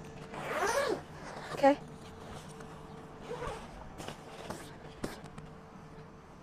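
Zipper on a fabric awning-tent panel pulled in a few quick strokes, buzzing with a pitch that rises and falls as the pull speeds up and slows. A longer pull comes about half a second in, then a short, sharp one, the loudest, and softer zips and scrapes a few seconds later.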